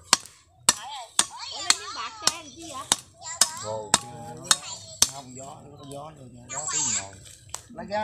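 Cleaver chopping into the top of a peeled fresh coconut, about a dozen sharp strokes roughly twice a second, cutting off the top as a lid.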